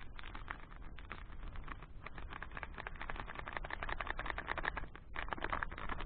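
Clear plastic packaging crinkling and rustling as it is handled, a dense crackle that is strongest in the second half, with a short break about five seconds in.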